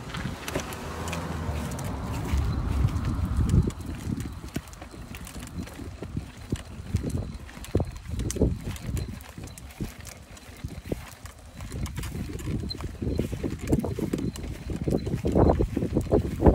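Wind gusting on the microphone, heard as an uneven low rumble, with the rattle of a toddler's plastic ride-on toy rolling over a concrete footpath and scattered clicks.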